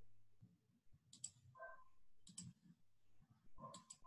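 Faint computer mouse clicks: three short double clicks about a second apart, over near silence.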